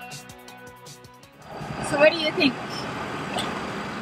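Background music fades out, and about a second and a half in it gives way to steady road and engine noise heard inside a moving van's cabin, with a few brief voice sounds.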